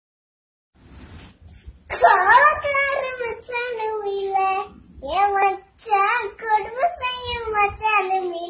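A little girl's high voice in a sing-song chant, with long drawn-out gliding notes beginning about two seconds in and brief pauses for breath.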